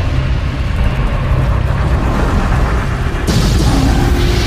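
Cinematic logo-intro sound effect: a deep, steady rumble, then a sudden explosion-like blast about three seconds in.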